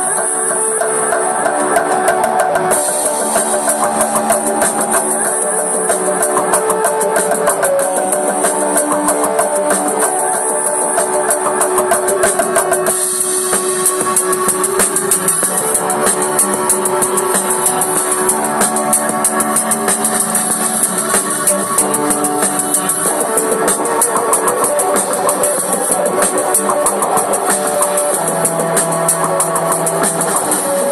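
Electric guitar being played with drums keeping a steady beat, a continuous rock-style passage.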